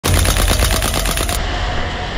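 Tokyo Marui Saiga SBS gas-blowback airsoft shotgun firing a full-auto burst of about eleven shots a second, cut off suddenly about 1.4 seconds in.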